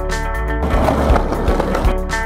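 Guitar music with a steady beat, and over it skateboard wheels rolling on concrete from about half a second in until near the end.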